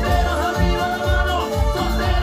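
Live band playing amplified Latin American dance music, a sung vocal line gliding over a steady bass beat of about four beats a second.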